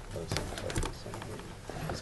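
Meeting-room handling noise: a few sharp clicks and rustles in the first second, with low murmured voices in the background.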